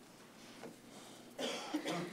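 A short cough about one and a half seconds in, over quiet room tone.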